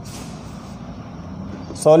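A cloth chalkboard duster rubbing briefly against a chalkboard, a short soft hiss near the start, over a faint low steady hum; a man says one word at the end.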